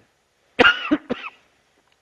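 A man coughing: a loud burst of about three quick coughs a little over half a second in, all over within about a second.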